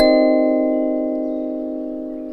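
Treelf TF-17C clear acrylic kalimba: a chord of several tines plucked at once, then left to ring and die away slowly as a held note of the melody.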